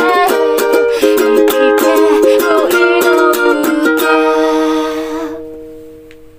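Ukulele strumming the closing bars of a song, with a last chord struck about four seconds in and left to ring, fading away near the end.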